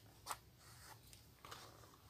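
Near silence, with one faint, short snip of small scissors cutting sewing thread about a third of a second in.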